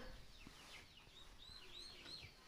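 Faint chirping of small birds: many short, curved notes, several a second.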